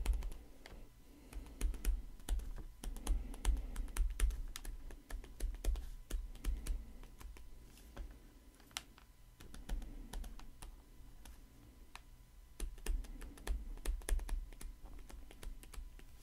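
Stylus tapping and scratching on a tablet screen while handwriting numbers and commas: irregular light clicks with soft low thumps, busiest near the start and again in the last few seconds.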